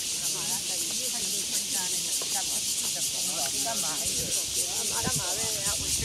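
Steady high-pitched hiss, with faint voices of people chatting beneath it.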